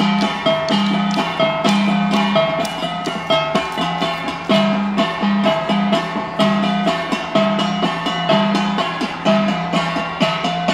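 Music for an Igorot dance: a fast, steady rhythm of struck metal gongs (gangsa), with ringing pitched notes repeating in an interlocking pattern.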